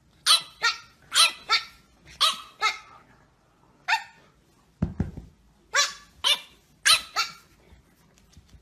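A French bulldog puppy barking in a string of short, high yaps, mostly in quick pairs with brief pauses between. A dull low thump comes about five seconds in.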